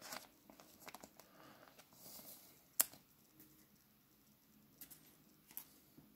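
Faint handling of a stack of chrome trading cards: soft rustles and a few light clicks, with one sharper click a little under three seconds in.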